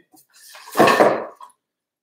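Bamboo tubes and a seat post being handled on a workbench: one short scraping clatter lasting about a second.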